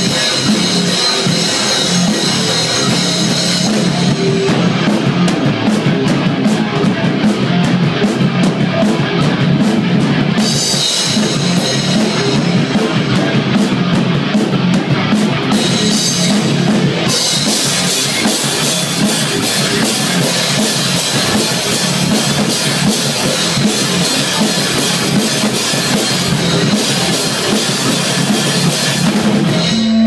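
Hardcore band playing live: distorted electric guitar, bass and fast, heavy drumming with cymbal crashes, loud and dense throughout.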